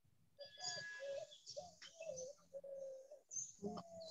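A bird calling faintly, a string of short low notes that waver in pitch, heard through a video-call microphone.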